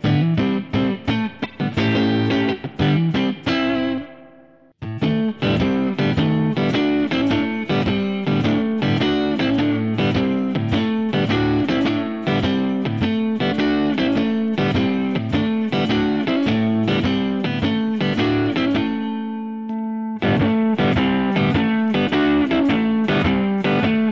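PRS DGT SE electric guitar played through a Kemper amp profile with the neck humbucker coil-tapped, giving a warm, more single-coil sound: a quick run of picked notes with a brief break about four seconds in, a note left ringing near the end, then a last phrase.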